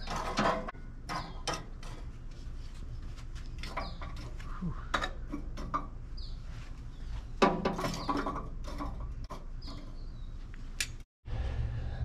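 Hot charcoal briquettes being pushed and spread with metal tongs across the steel charcoal grates of an offset smoker: scattered irregular clinks, knocks and scrapes of charcoal and metal.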